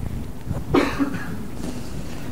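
A person coughs once, loudly, about three-quarters of a second in, with a fainter throat noise a little later.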